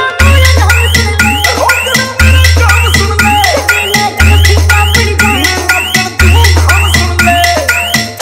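Electronic 'punch bass' DJ remix of a Haryanvi song, instrumental here: a deep bass note held about two seconds and struck again four times, under fast, even percussion hits and rising synth sweeps.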